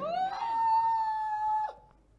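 A woman's high, drawn-out wail: one long cry that rises at the start, holds at a steady pitch, then breaks off with a short downward drop near the end.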